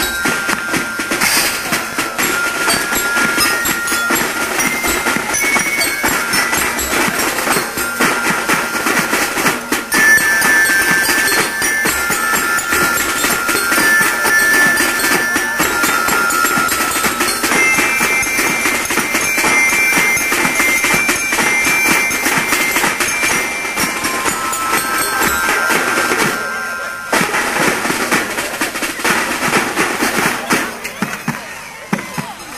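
Marching band music: drums beat a steady march while a high tune on bell lyres plays over them. The tune thins out briefly about three seconds before the end.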